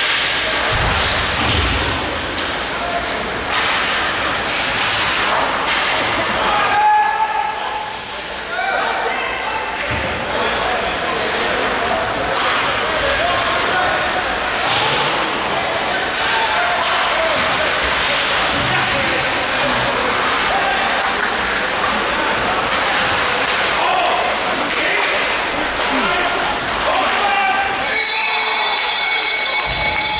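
Ice hockey game heard from the stands: crowd chatter and calls over the knocks of sticks and puck on the ice and boards. Near the end a steady high tone starts up as a goal is celebrated on the ice.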